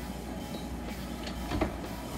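A stainless wall-oven door being pulled open by its handle, with short clicks about one and one and a half seconds in, over a steady low hum.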